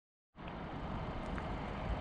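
A 2021 Kia Seltos SX crossover with its 1.6-litre turbo engine, rolling slowly along a gravel track. Its engine and tyres make a steady, quiet noise that fades in about a third of a second in.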